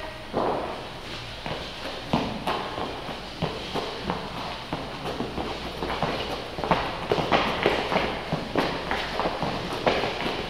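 Irregular thuds and footfalls of several people exercising on rubber gym flooring, their feet and hands striking the mats. The impacts come faster and louder in the second half as people drop to the floor.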